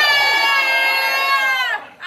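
One high-pitched voice holding a single long drawn-out call, steady in pitch, that dips and cuts off just before the end.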